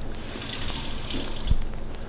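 Close, wet mouth sounds of a person chewing a soft mouthful of durian, with a soft low thump about one and a half seconds in.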